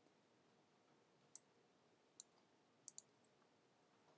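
Near silence broken by four faint, short clicks from working a computer's controls, the last two close together.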